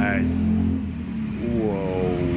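Brief bits of a person's voice, at the very start and again near the end, over a steady low hum.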